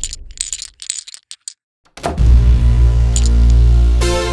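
A chain of dominoes toppling along the piano keys in a quick run of clicks for about a second and a half. After a brief pause a hammer strikes a key about two seconds in, and loud sustained synthesizer chords with a heavy bass begin.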